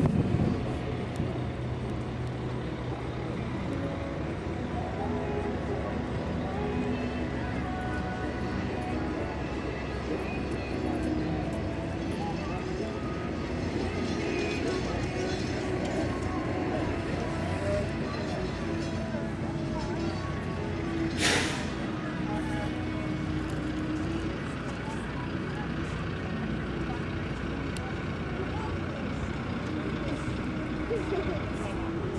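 Outdoor fairground background: indistinct distant voices over a steady hum of engines and machinery. About two-thirds of the way through comes one short, loud hiss.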